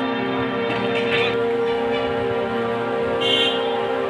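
Background music: sustained drone-like chords with bell-like tones, with a couple of brief brighter flourishes.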